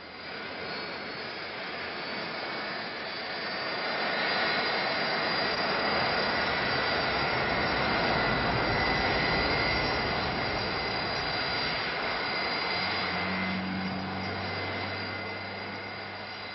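Boeing 747 jet engines in flight: a steady rush with a thin high whine, swelling a few seconds in and easing toward the end, with a low hum joining near the end.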